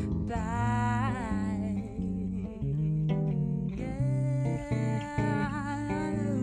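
A woman singing a slow melody with vibrato, accompanied only by an electric bass guitar playing low notes and chords.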